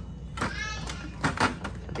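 A few light plastic clicks and knocks from a freezer's twist-type ice maker being handled at its knob, just past a second in. A brief voice sound comes before them.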